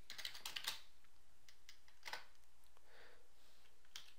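Computer keyboard keystrokes typing a command line: a quick run of several key taps in the first second, then a single stronger tap about two seconds in, and another tap near the end.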